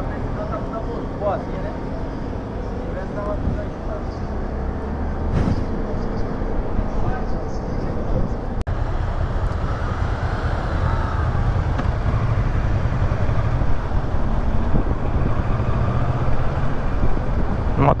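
Motorcycle engines running at low speed around a fuel station forecourt, a steady low hum that gets stronger in the second half as the bikes pull out onto the road. There is a brief dropout about halfway, at an edit.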